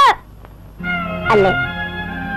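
A long, high-pitched shouted call cuts off with a falling tail at the start. Film background music with sustained chord tones comes in just under a second later, and a short call with falling pitch sounds over it.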